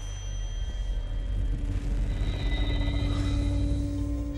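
Tense film underscore: a deep rumbling drone that builds in loudness, with long held tones above it.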